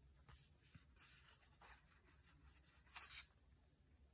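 Faint rustling of paper cards and tags being handled, with a brief louder rustle about three seconds in.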